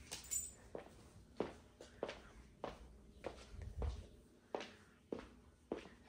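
Soft footsteps of someone walking in sock-like Yeezy Pods on a laminate floor, a little under two steps a second.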